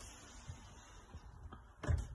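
Quiet room with a few faint low knocks and one louder short thump near the end.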